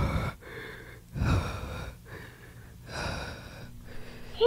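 A person breathing heavily inside a full-head costume mask, three long breaths about a second and a half apart.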